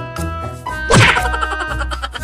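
A sharp cartoon-style whack sound effect about a second in, laid over background keyboard music.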